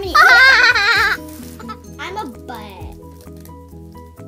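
A child's helium-raised voice in a loud, high, wavering, bleat-like warble for about a second, then a shorter squeak that falls in pitch about two seconds in.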